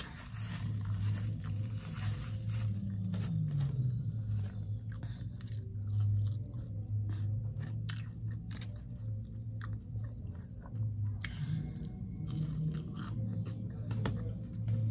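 A person chewing and biting breakfast food close to the microphone, with many small clicks and crunches from the mouth.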